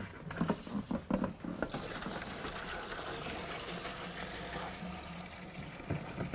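A few light knocks and clatters. Then, from about two seconds in, a steady hiss of alcohol streaming and splashing into a plastic bucket.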